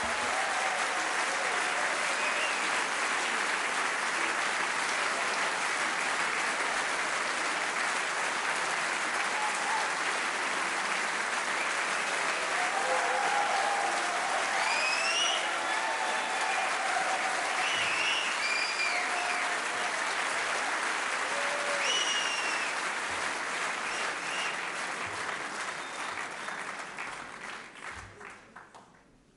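Concert hall audience applauding steadily, with a few whistles and cheers, dying away over the last few seconds.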